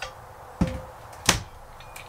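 Metal J-hooks knocking as they are picked up: two short sharp clanks, the second louder.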